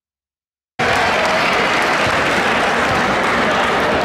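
Silence for under a second, then a crowd in a gym applauding, starting abruptly and going on steadily.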